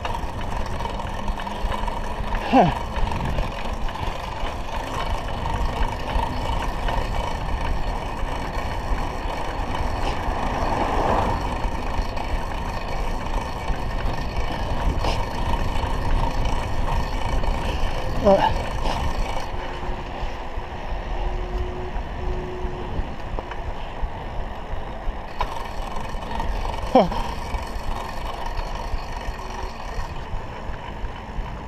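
Steady wind and road noise on the microphone of a road bike riding along a paved road, a constant low rush. Three short, falling whistle-like sounds come through it: a few seconds in, about halfway through, and near the end.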